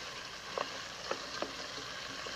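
Sliced cured calabresa sausage with onion and garlic sizzling as it fries in margarine in a steel pot. It is stirred with wooden spoons, and there are three short clicks from the stirring.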